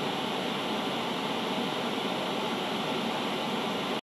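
Steady, even hiss of white noise like TV static, with no rhythm, tone or change in level.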